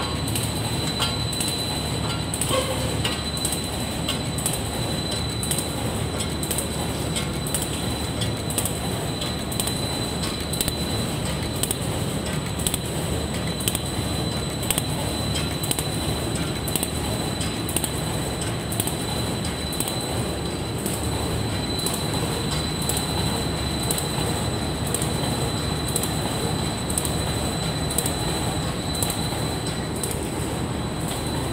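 Automatic folder gluer and box-forming machine running steadily: an even mechanical rumble of its belts and rollers, with a thin high whine and a regular click repeating about once a second.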